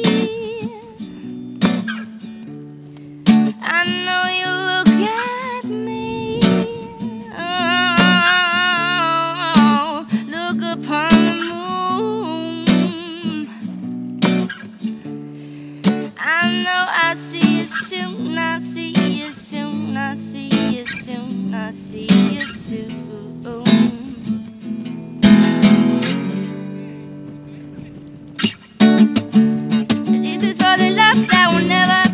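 Music: a woman singing to her own strummed acoustic guitar, with vibrato on her held notes.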